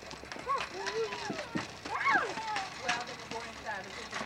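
A young child's high voice making wordless calls and squeals that rise and fall in pitch, with scattered light clicks.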